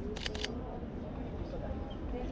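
Camera shutter firing three times in quick succession about a quarter second in, over faint background voices.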